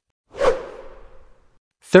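A whoosh transition sound effect: one sudden swish that fades away over about a second.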